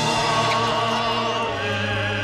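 Choral music on the soundtrack: voices singing long held notes that waver slightly, several pitches sounding together.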